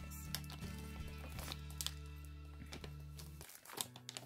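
Plastic bag crinkling in short, scattered crackles as items are pulled out of it, over quiet background music.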